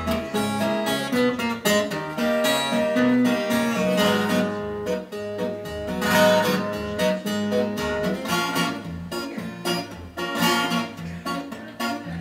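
Acoustic twelve-string guitar strummed alone in an instrumental break, a steady run of chords with no voice.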